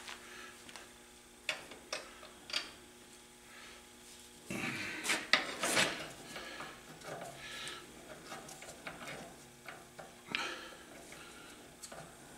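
Steel compressor valve parts clinking, knocking and scraping as they are handled and worked on bolts in a bench vise. A few sharp clicks come early, a louder stretch of scraping and clinking comes about halfway through, and another knock comes near the end.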